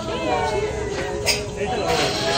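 A person's voice holding one long wordless sound that wavers up and down in pitch.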